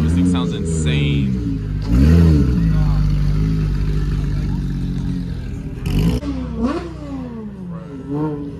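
Porsche 911 GT model's flat-six engine revving as the car pulls away at low speed, with a sharp rise in revs about two seconds in, then holding a steady note.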